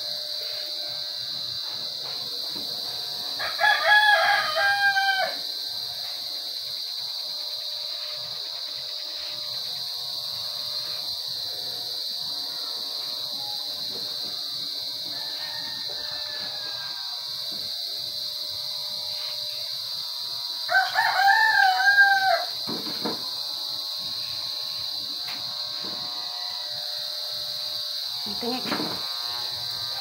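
A rooster crowing twice, once about four seconds in and again about 21 seconds in, each a single call of nearly two seconds.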